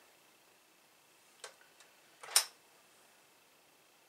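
A household steam iron pressed down to fuse small fabric motifs: two light clicks, then a short, sharp hiss about two seconds in.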